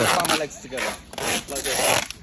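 Rough rubbing and scraping noise in two swells, a short one at the start and a longer one through the second half.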